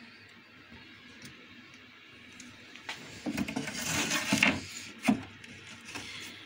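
A wooden moulding strip being handled and slid across the metal table and fence of a mitre saw, with a scraping rub building in the second half and a sharp knock about five seconds in.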